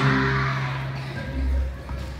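Music: a held low chord ringing out and fading away about a second in, with a short burst of noise at its start.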